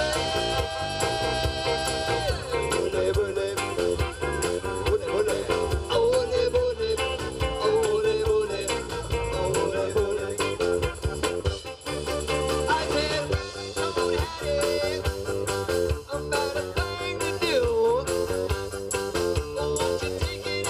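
Live rock band playing a song with electric guitar, drums and keyboard, and a man singing lead. A long note is held for about the first two seconds.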